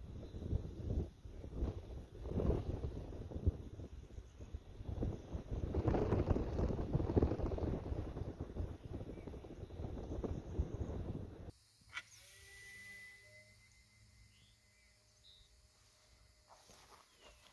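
Wind buffeting the microphone in irregular gusts. About three-quarters of the way through it cuts abruptly to a much quieter outdoor background with a few faint thin steady tones.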